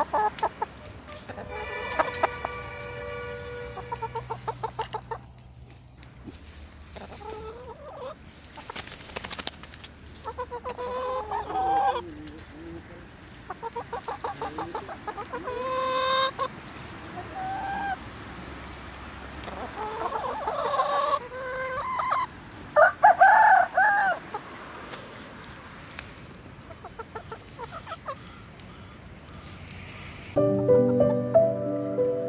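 Domestic chickens clucking and calling in repeated bouts, including rooster crowing; one long pulsed call comes early, and the loudest calls come a little past the middle.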